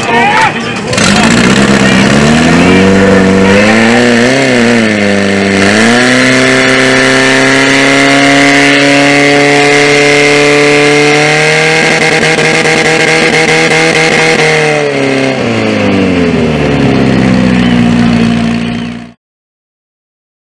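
Portable fire-pump engine running at high revs under load as it drives water to the hoses: the pitch climbs in steps over the first few seconds, holds high and steady, then falls back to lower revs. The sound cuts off suddenly near the end.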